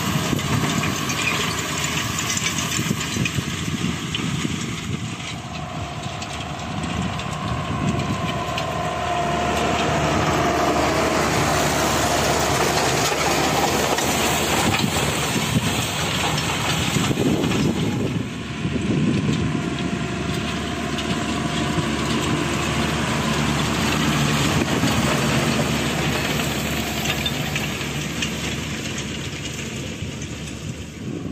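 John Deere 6920S tractor's six-cylinder diesel engine working under load as it pulls a seed drill across the field. Its level rises and falls as the tractor moves nearer and farther away.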